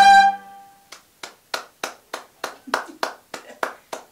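A violin's final note stops just after the start and rings away briefly in the room. From about a second in comes one person's steady hand clapping, about three claps a second.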